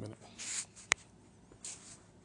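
A single sharp click just before a second in, with soft short hisses before and after it.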